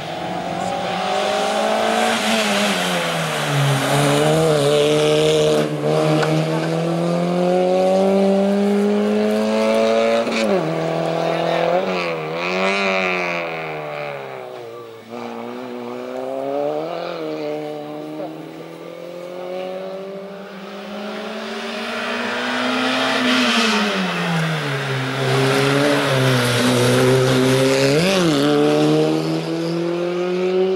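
Small Peugeot hatchback race car's engine revving hard, its pitch climbing and dropping again and again as it accelerates and slows between cones, with several sharp rev blips. It fades somewhat around the middle and comes back louder near the end.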